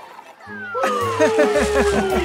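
Cartoon soundtrack starting up after a short lull: bass notes come in about half a second in, with a long, slowly falling glide and a quick run of short pitched notes over them.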